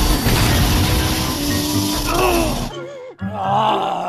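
Cartoon crash sound effect, a loud noisy rush that cuts off sharply a little under three seconds in, followed by a cartoon character's wavering, pained groan.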